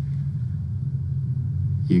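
A steady low rumble with a held low hum under it, continuing through a pause in the dialogue.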